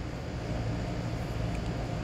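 Steady background hum and hiss, like a fan or ventilation running, with a low even hum and no distinct events.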